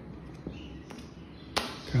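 Tarot cards being cut into piles on a granite countertop: a couple of faint taps, then a sharp slap about a second and a half in as a pile of cards is set down on the stone.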